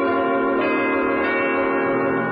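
Organ music: a full chord held steadily, with a higher note joining about half a second in.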